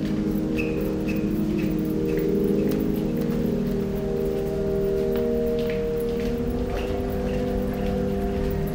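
Electroacoustic music: a steady drone of several low held tones, dotted with short high chirping blips and faint clicks. A higher held tone joins about halfway through.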